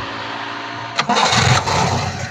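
A 1986 Toyota Starlet's four-cylinder engine being started: a steady cranking sound, a sharp click about a second in, then the engine catches and runs louder and unevenly.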